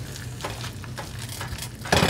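A plastic spatula stirring shredded cheese, cream cheese and taco sauce in a skillet over an electric burner: soft scraping and squishing against the pan with a light sizzle as the cheese melts.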